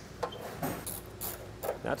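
Hand ratchet and socket clicking a few times, short and uneven, with light metal clinks.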